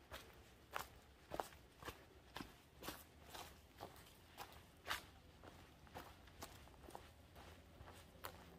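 Faint footsteps of a hiker walking on a dirt forest path strewn with leaves, at an even pace of about two steps a second.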